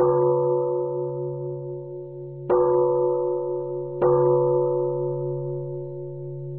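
Three struck, bell-like chimes, the second about two and a half seconds in and the third a second and a half later, each ringing on and slowly fading over a low steady drone: an intro jingle.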